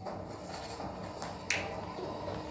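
A single sharp click about one and a half seconds in, over a faint steady background of television sound.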